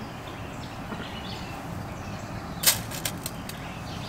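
Small pebbles of gravel concentrate scooped by hand and dropped onto a metal tray: a short run of sharp clicks and rattles about two-thirds of the way through, over steady low background noise.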